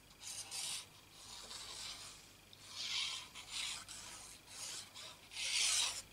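Card stock rubbing and scraping in irregular bursts as a paper panel is handled and a glue bottle's nozzle is run across it, the loudest scrape near the end.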